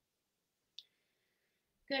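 A single sharp click a little under a second in, followed by a faint ringing tone that fades within a second; a woman starts speaking near the end.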